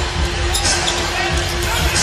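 Basketball game sound in an arena: a ball bouncing on the court under loud crowd noise, with one steady held note, like arena music, running through it.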